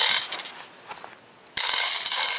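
Hard plastic LEGO pieces rattling and clicking as they are handled: a short burst at the start, then a denser rattle that starts suddenly about a second and a half in.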